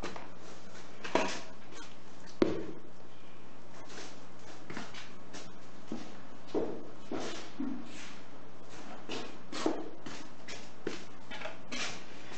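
Scattered soft clicks, knocks and rustles over a steady low hum.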